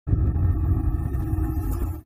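Deep, rumbling intro sting with steady tones held over it, cutting off suddenly at the end.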